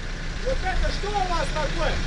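Backhoe loader's diesel engine running steadily as a low rumble, with a faint voice speaking over it in the middle.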